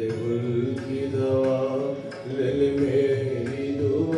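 A Marathi song: a sung vocal melody of long, gliding held notes over instrumental accompaniment with a steady low bass.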